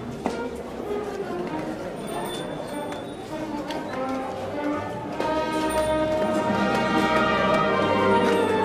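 Processional band music playing held chords, growing louder about five seconds in, over the chatter of a street crowd.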